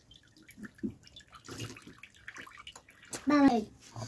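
Watermelon juice trickling and dripping from a metal strainer into a pot of juice, with a few light knocks. A short voice is heard about three seconds in.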